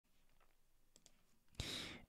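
Near silence with two faint computer mouse clicks about a second in, then a short burst of noise near the end.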